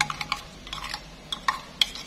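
Metal spoon stirring a thick beef marinade sauce in a glass bowl, clinking lightly and irregularly against the glass.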